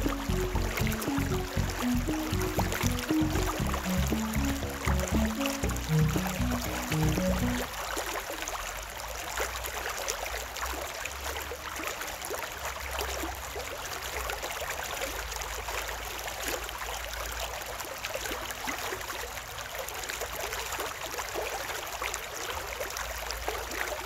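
Background music made of low notes plays for the first third or so, then stops, leaving the steady rush of a shallow stream running over stones.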